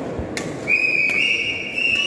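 A loud, steady high-pitched whistle comes in just under a second in and holds, stepping slightly up in pitch once or twice, after a short knock.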